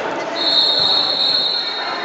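Referee's whistle blown in one long, steady high blast that starts about a third of a second in and lasts nearly two seconds, the signal for the serve. Hall chatter underneath.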